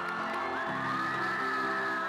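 Background music of sustained, held chords over a stadium crowd cheering.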